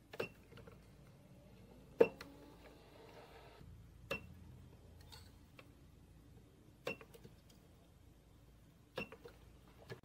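Handheld spot welder pens firing on the battery pack's nickel strip, five sharp snaps about two seconds apart as small tabs are welded on.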